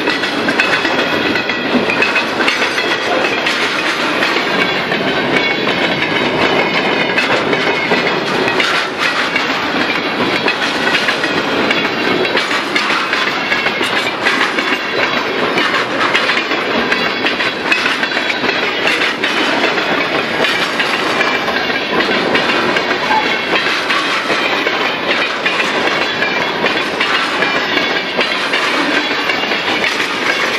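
Freight train cars (autoracks, boxcars, covered hoppers) rolling past close by: a loud, steady rumble and rattle of wheels on rail, with occasional sharp clicks.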